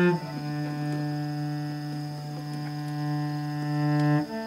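Cello bowing one long, low, steady note; the player moves to this note just after the start and holds it until the end.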